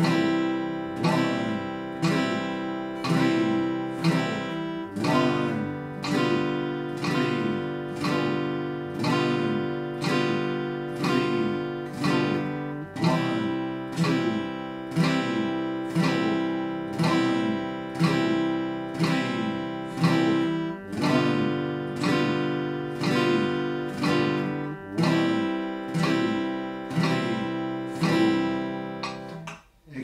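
Acoustic guitar strummed with single downstrokes in a steady quarter-note beat, about one chord stroke a second, each chord ringing until the next; the chord changes every few bars.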